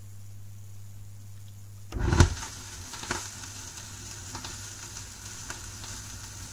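Vinyl 45 RPM single in the lead-in groove before the song: a steady low hum, then about two seconds in a thump, after which the hum stops and the stylus gives surface crackle with scattered clicks.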